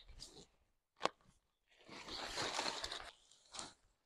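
Fabric rustling as rolled camping gear is pulled from its fabric carry bag and handled, with a sharp click about a second in and a longer rustle of about a second from about halfway.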